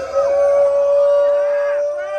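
A male lead singer holding one long, steady high note into a microphone through a live concert PA.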